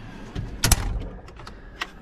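Metal tool-cabinet drawers being shut and pulled open: a short sliding scrape ending in a sharp clack about two-thirds of a second in, then a smaller click near the end.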